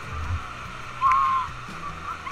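Background music: a melody with one long, arching note about a second in, over a steady low bass line.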